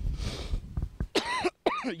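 A man's short, breathy cough near the start, followed by voice sounds as he starts speaking again.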